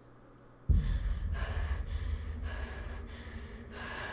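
Horror movie trailer soundtrack starting: after a moment of near silence, a deep low rumble comes in suddenly under a second in and holds, with fainter airy pulses above it about twice a second.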